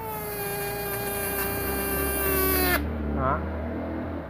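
Electric arc drawn across the output of a 16D electrofishing inverter during a spark test: a steady buzzing whine with a hiss over it, its pitch sagging slightly, cutting off suddenly a little under three seconds in.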